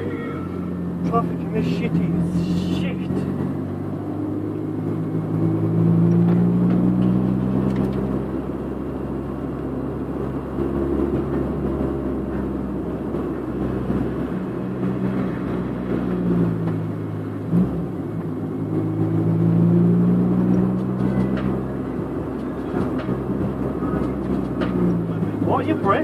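Honda Civic's B18C4 VTEC four-cylinder heard from inside the cabin while driving, its note rising and falling several times as the car speeds up and eases off, over steady road noise.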